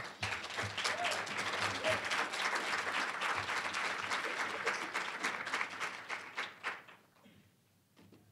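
Audience applauding after a speech, a dense patter of many hands clapping that dies away about a second before the end.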